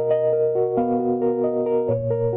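Piano playing an arpeggiated chord pattern: a run of single upper notes, about four a second, over a held bass note that moves to a new note near the end.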